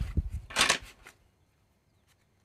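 Playing cards from a new deck being handled: a few faint clicks, then a short rustle about half a second in.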